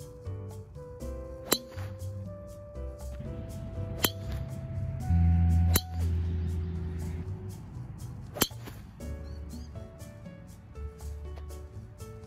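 Background music with a melody, broken by several sharp clicks. The clearest click, just before six seconds in, is a driver's clubhead striking a golf ball, with a brief low rumble just before it.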